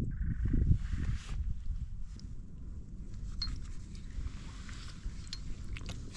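Wind buffeting the microphone: an uneven low rumble that eases off after the first second or so, with a few faint clicks and knocks.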